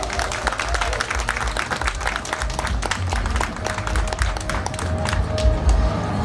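Audience applauding: many separate hand claps, with a low steady rumble underneath.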